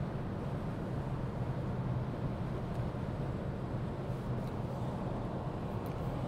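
Steady road and engine noise heard from inside a Peugeot car cruising on a motorway at about 130 km/h on cruise control, a continuous rush with a low, even hum underneath.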